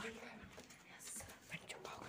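A person whispering faintly, in short hissy bursts, with no clear words.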